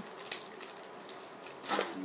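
Clear plastic candy wrapper crinkling in a scatter of small ticks as a bendable lollipop is handled, with a brief voice near the end.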